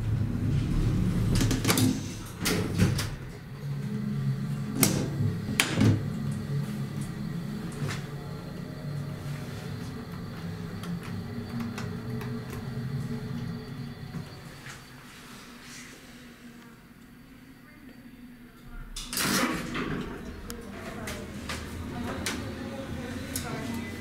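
Small passenger elevator in use: the cab runs with a steady low hum, broken by several sharp clicks in the first six seconds. It goes quieter, then near the end a loud burst of door noise as the doors slide open, followed by hallway ambience with voices.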